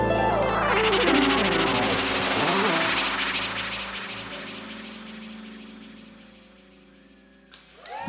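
Live band of drums, guitar, bass and keyboards ending a song. A final loud chord comes with a fast drum roll and notes gliding up and down in pitch about one to three seconds in. The sound then dies away steadily to very quiet.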